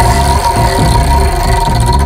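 A loud edited-in sound effect: a steady held tone over a low rumbling bed, starting abruptly.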